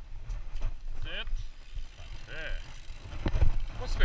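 YT Capra 27.5 mountain bike running down a dirt trail: a constant low rumble of tyres and wind on the helmet-camera mic, with the frame and drivetrain knocking and rattling over bumps. A person's voice calls out briefly twice, about a second in and again about halfway through.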